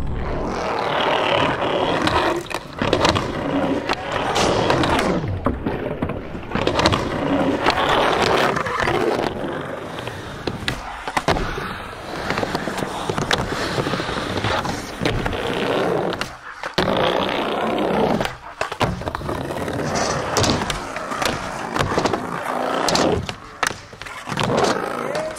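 Skateboards rolling on ramps: a steady rush of urethane wheels on the riding surface, broken by frequent sharp clacks and impacts of boards, trucks and tails, with short drops between runs.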